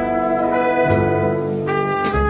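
A big band's horn section, trumpets, trombones and saxophones, playing sustained chords in a slow jazz ballad, the held notes moving to a new chord about a second in and again near the end.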